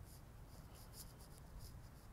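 Near silence: room tone with a low hum and a few faint, brief ticks.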